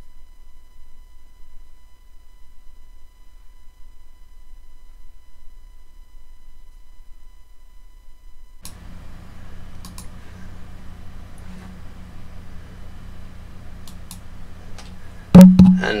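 Faint low electrical hum with a weak steady tone. About nine seconds in, a microphone comes live: hiss and mains hum rise, with a few sharp clicks, and a loud thump just before the end as the mic is handled.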